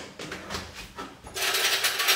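A few light knocks on the counter, then just over a second in a kitchen drawer is pulled open and the cutlery inside rattles and clinks loudly for about a second as a spoon is taken out.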